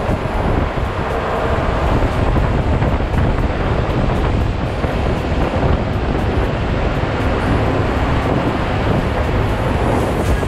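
Western Star tri-axle dump truck driving on a gravel site road, heard from a camera mounted outside the cab: steady engine and tyre noise, largely covered by wind buffeting the microphone.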